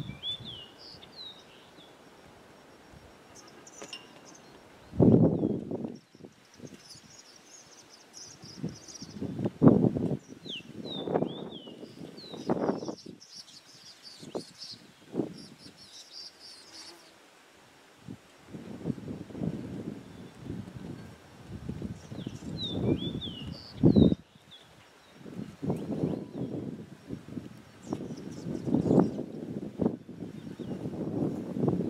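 Tree swallows calling in short bursts of high, falling chirps and twitters. Low rumbling gusts come and go between them and are the loudest sounds.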